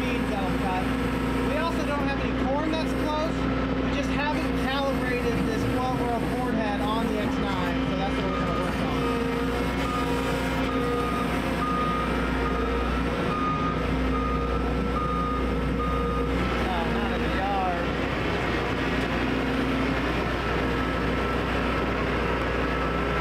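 Heavy diesel engine of a John Deere X9 combine running steadily at idle. Through the middle stretch a backup alarm beeps at an even pace. Faint voices come and go in the background.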